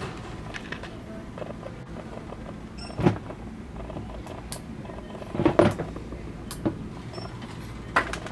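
A white plastic trash can being handled and moved into a shopping cart: a sharp knock about three seconds in and a few more knocks around five and a half seconds, over steady store background hum.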